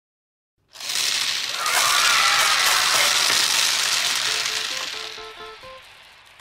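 A loud rattling rush of many small plastic balls pouring out of a bottle and scattering across a hard tabletop. It starts suddenly about a second in and fades away, and a short run of musical notes comes in near the end.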